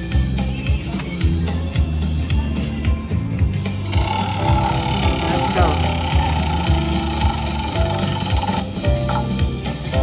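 Aristocrat Diamond Jewel slot machine playing its wheel-bonus music and sound effects over a steady bass line, with a brighter, higher layer coming in about four seconds in as the bonus wheel spins.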